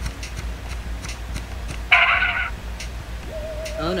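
Cartoon soundtrack: faint regular ticking over a low hum, a sudden short sound effect about two seconds in, and a wavering tone coming in near the end.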